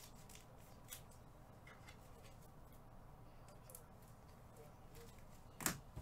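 Near silence with a few faint clicks, then a sharp knock shortly before the end.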